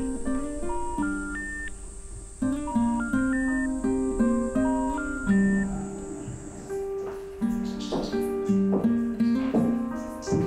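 Background music: a plucked acoustic guitar playing a slow melody of single notes.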